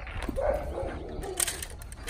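A German shepherd barks during protection-style table work, with a few sharp clicks about a second and a half in.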